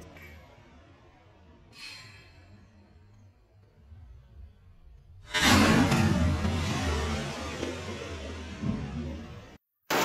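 Slowed-down sound of AK-47 fire from slow-motion footage: a faint brief clink about two seconds in, then about five seconds in a sudden loud shot that dies away slowly over about four seconds before cutting off.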